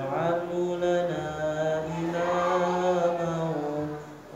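A man's solo voice chanting an Arabic recitation in slow melodic phrases, holding long notes and pausing for breath near the end.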